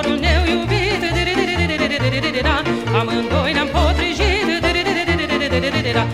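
Romanian Bucovina folk music: an ornamented lead melody with wide vibrato runs over a steady, pulsing bass beat.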